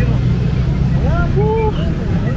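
Street ambience: a loud, steady low rumble, with faint voices about a second in.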